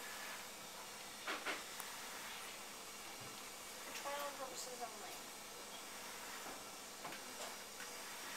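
Faint steady hiss, with a few soft knocks and handling sounds from the stainless steel toilet's pull-out panel, and one short spoken word a little past halfway.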